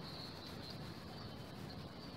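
Faint, steady outdoor background noise with no distinct event.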